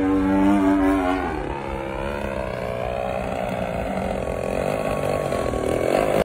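Homemade RC model jet's motor running in flight with a steady whine. About a second in the pitch shifts, then the whine slowly rises and grows louder toward the end as the plane comes in on a low pass.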